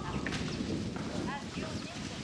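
Outdoor background with faint voices and a few short high chirps, one group about a third of a second in and another just past one second.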